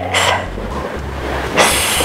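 A woman's quick, loud breath in, a short hiss about one and a half seconds in, taken just before she speaks, during a Pilates reformer leg press.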